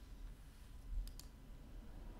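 Two quick faint clicks about a fifth of a second apart, halfway through, over a low steady room hum.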